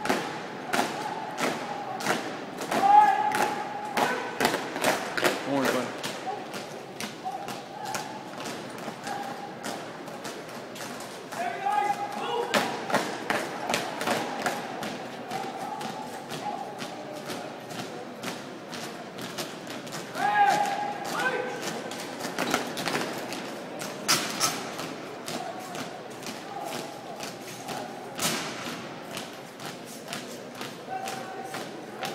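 Drill team marching in step on a hard hall floor: a steady run of stomps and heel strikes, about two a second, with loud shouted drill commands a few times.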